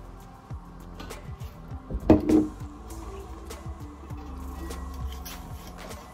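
Soft background music, with light knocks and clicks from glass vases being handled; the loudest is a single knock with a short ring about two seconds in.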